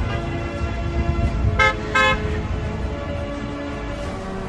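A car horn tooting twice in quick succession, two short honks about half a second apart, from a passing vehicle.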